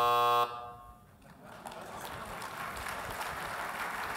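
A steady electronic buzzer tone, signalling that the speaking time is up, cuts off suddenly about half a second in. Then audience applause builds up and carries on.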